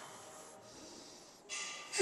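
A lifter's forceful breath through the nose, straining as he pulls a loaded barbell back up during a deadlift rep. It comes about one and a half seconds in, after faint gym room tone.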